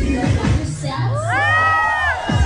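Dance-workout music with a steady kick drum breaks off about a second in, and a crowd of dancers whoops and cheers together over a held low note, the many voices swelling up and falling away.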